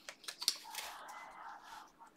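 Trading cards handled by hand: several light clicks and taps in the first half second, then a soft sliding rustle of card against card.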